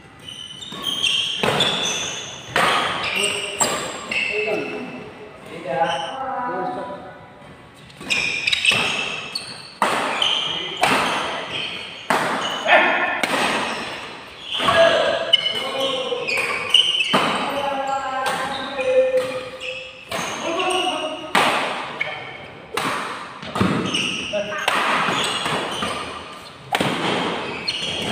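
Badminton rackets hitting a shuttlecock back and forth in doubles rallies: sharp cracks at irregular spacing, roughly one a second, with voices between them.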